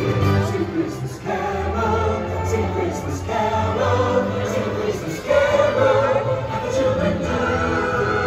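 Parade soundtrack music with a choir singing sustained phrases, played over outdoor loudspeakers along the parade route.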